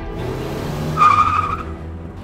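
A car's tyres squealing briefly about a second in, over background music.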